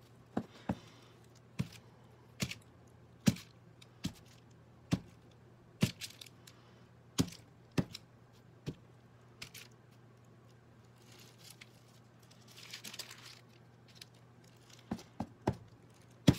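Wood-mounted rubber stamp being dabbed on an ink pad and pressed onto paper on a desk: a series of sharp taps, irregularly about one a second, with a short paper rustle about two-thirds of the way through and a few more taps near the end.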